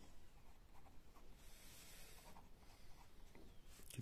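Faint sound of a uni-ball Eye rollerball pen writing on ruled notebook paper.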